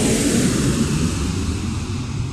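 Jet airliner flying past: a loud rush of jet engine noise whose hiss slowly fades away while a low rumble carries on.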